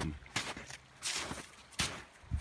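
Footsteps in snow: three steps at a walking pace, each a short crunch.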